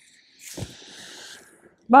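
Scissors shearing through a thick hank of wet hair: a high, noisy cut lasting about a second, with a soft knock near its start.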